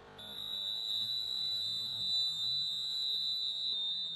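A steady, high-pitched electronic tone begins just after the start and holds unbroken, over faint background music.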